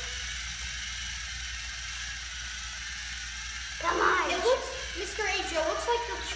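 LEGO Mindstorms NXT robots' electric drive motors whirring and gears grinding steadily as the two robots push against each other in a stalemate. Voices come in about four seconds in.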